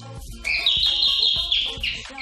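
A high, warbling electronic chime rings for about a second and a half, starting about half a second in, over background music.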